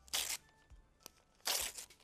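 Magazine paper torn by hand: two short rips, one just after the start and one about a second and a half in.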